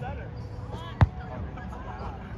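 A volleyball hit once: a single sharp smack about a second in, with players' voices around it.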